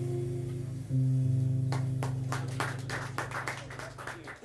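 Closing low notes of a jazz tune on a plucked double bass: a low note fades away, is plucked again about a second in and fades again. Scattered audience clapping starts a couple of seconds in and thickens.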